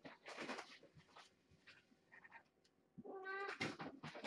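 A cat meows once, a short call about half a second long, near the end. A few brief rustling noises come before it.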